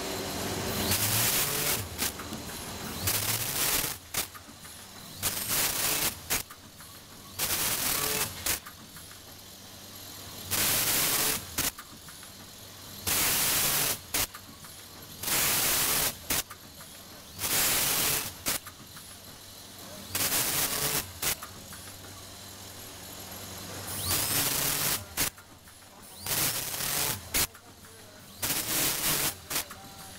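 Automatic vertical packaging machine running through its cycle: a loud burst of hissing noise about a second long roughly every two to three seconds, with sharp clicks between the bursts over a steady low machine hum.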